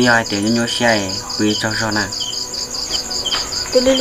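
Crickets chirping in a steady, even pulse of about five chirps a second, continuing through and under the talk.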